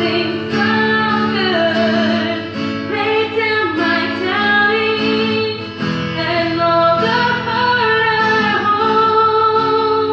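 Live worship song: an acoustic guitar played under a singer's voice through a microphone, sung in long held notes.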